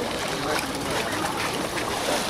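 Water sloshing and trickling in a cold-water bathing font as a person climbs down into it, with voices talking in the background.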